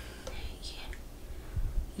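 A quiet pause in a woman's talk: a few faint, short breathy sounds over a low steady background hum.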